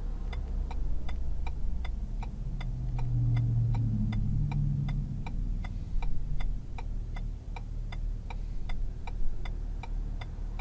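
A car's turn-signal indicator ticking evenly, a bit over two clicks a second, heard inside the stopped vehicle's cabin over a low engine hum. A deeper rumble swells and fades a few seconds in.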